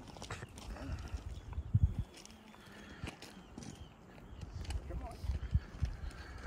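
Faint, indistinct voices with scattered low thumps and clicks, loudest about two seconds in and again near the end.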